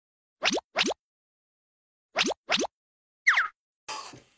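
Short, quick rising 'bloop' pop sound effects: two in quick succession about half a second in, two more just after two seconds, then one falling pop a little after three seconds, with dead silence between.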